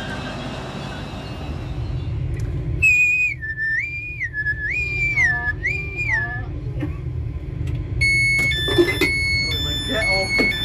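Door warning tones of a GWR Class 800 train: a high two-note chime alternating up and down about four times, then a run of short, sharp beeps as the door-open button is pressed and the door releases. Under it all runs the train's low hum.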